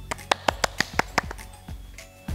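One person clapping her hands about six times in quick succession, over soft background music.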